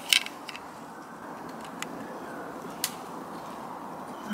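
A few sharp handling clicks, the loudest right at the start and fainter ones spread through the rest, over a steady faint hiss.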